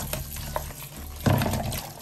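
Tap water running over snails in a plastic container held in a sink, splashing into a plastic bowl below, with a louder splash a little over a second in as the container is tipped.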